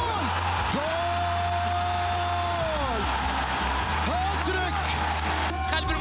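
Football commentator's long drawn-out shout as a goal goes in, over background music with a steady low bass line, followed by shorter excited calls.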